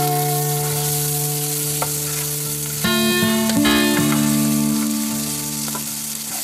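Beet slices sizzling in hot oil in a frying pan, a steady hiss throughout. Under it sit steady held musical notes that change about halfway through.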